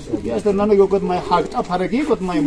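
A person's voice making drawn-out, wavering vocal sounds, with no clear words.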